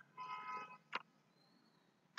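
A short hum-like pitched sound, then a single computer mouse click about a second in, with faint room noise.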